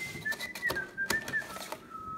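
A person whistling a short run of notes that wavers and steps downward in pitch, over light clicks and rustling of a cardboard pizza box being handled.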